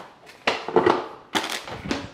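Stainless steel step-on trash can in use as a green bell pepper is thrown away: a few short knocks and thuds of the lid and the falling pepper, the sharpest about a second and a half in.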